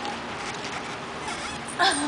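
Steady background noise, then near the end a short, high, wavering vocal sound.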